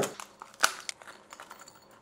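Clear plastic blister pack of copper cable lugs being pulled open by hand: a couple of sharp plastic snaps and a few crinkles, mostly within the first second.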